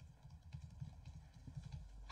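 Near silence with faint, irregular low knocks, a few a second, over room tone.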